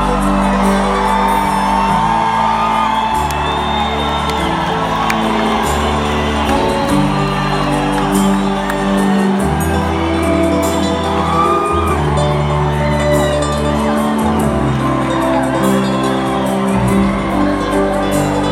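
A live band plays in an arena, heard from the audience, with sustained chords shifting every second or two. There are a few scattered whoops and whistles from the crowd.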